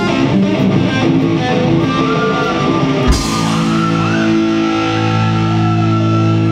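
Live heavy metal band with distorted electric guitars and drum kit. Busy drumming and riffing for about three seconds, then a hit into a sustained held chord with lead-guitar notes held and bent over it.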